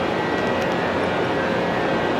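Steady rushing drone of machinery and air-handling beside a standing high-speed electric train on a station platform, with a faint steady high whine over it.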